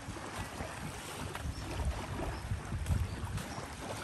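Wind buffeting the microphone over the soft wash of small waves lapping on a sandy shore, with a stronger gust about three seconds in.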